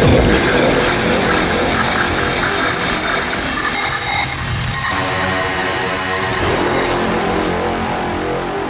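Oldschool darkcore hardcore electronic music: a dense, noisy wash of sound, with a pitched note with many overtones held for about a second and a half just past the middle.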